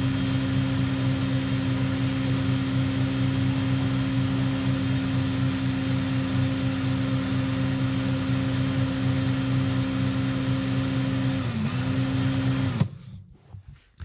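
Electric drill running at a steady speed, spinning a snowmobile water pump shaft against fine emery cloth to sand out a groove worn by a seal. Near the end the motor's pitch sags briefly, recovers, and then it cuts off.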